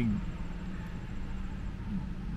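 Steady low rumble of background noise inside a parked car's cabin, with a faint thin high whine above it.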